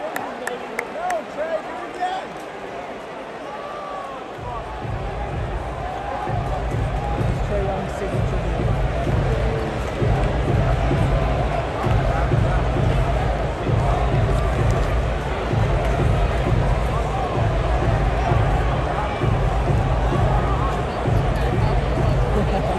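Crowd noise in a basketball arena. About four seconds in, PA music with a heavy bass beat starts and plays over it.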